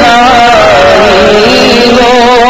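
Male voice reciting a naat: a long held note that slides and wavers up and down in pitch, loud and heavily compressed.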